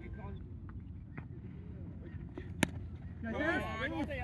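Low outdoor rumble with a single sharp knock about two and a half seconds in, then men's voices calling out near the end.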